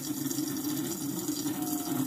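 A thin stream of reverse osmosis filtered water runs steadily from the drinking-water faucet into a sink, at decent pressure.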